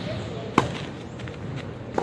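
Tennis ball impacts in a clay-court rally, racket strikes and bounces: a sharp hit about half a second in, the loudest, and another near the end.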